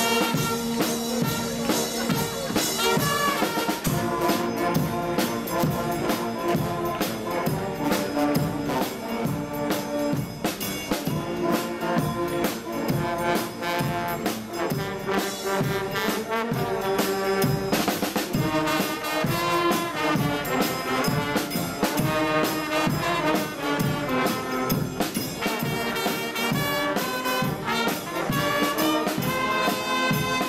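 Brass band playing: trumpets and trombones carry the tune over a steady beat of bass drum and snare drum.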